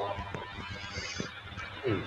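Low background noise of an online video call with a few small clicks, and a short gliding voice sound near the end.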